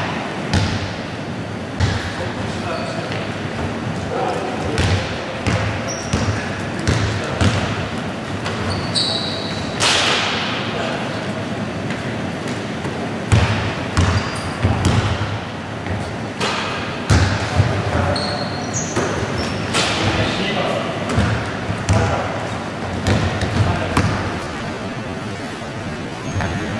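Basketball bouncing on a wooden gym floor, many separate thuds at an uneven pace, with a few short high squeaks of sneakers and players' calls, echoing in a large hall.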